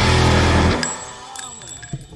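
Heavy rock background music that stops abruptly about three-quarters of a second in, leaving a fading tail.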